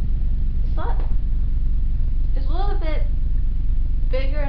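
A steady low hum, with two short vocal sounds over it: a brief one about a second in and a longer one that rises and falls in pitch near three seconds in.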